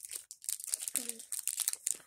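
A small snack wrapper crinkling and tearing as it is pulled open by hand: a run of quick, dry crackles.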